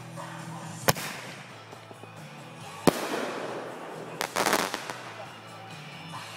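Fireworks going off: two sharp bangs about two seconds apart, then a quick run of crackling about four and a half seconds in. Music plays underneath.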